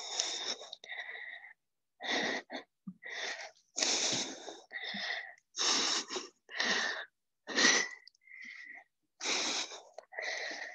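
A person breathing hard from exertion while holding a plank with leg lifts: short, forceful, hissing breaths, about one a second.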